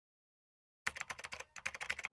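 Quick run of computer-keyboard typing clicks, starting about a second in, with a brief pause halfway, about a dozen keystrokes a second.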